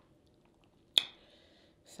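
A person chewing a mouthful of seafood, mostly faint, with one sharp click about a second in.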